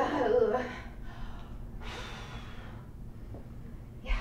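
A woman laughs briefly, then takes one long, breathy breath, a sigh or deep gasp, as she gathers herself before performing.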